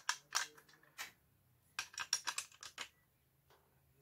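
Light clicks and scrapes of a screwdriver turning small screws into the clear plastic housing of a Dyson DC23 vacuum cleaner head: a few clicks in the first second, then a quicker run of clicks around the middle.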